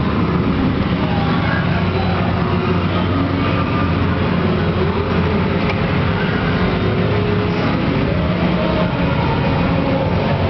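An Extreme Round the Bend fruit machine being played amid a steady, loud din with a low hum. Faint short tones and voices sit in the noise.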